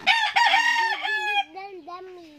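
A rooster crowing once: a single long crow with a raspy start, loudest in its first second and a half, ending in a falling final note.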